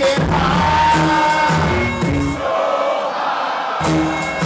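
Live hip hop concert sound over a PA: a beat with a heavy bass line and vocals, with crowd noise. The bass drops out for about a second past the middle, then comes back in.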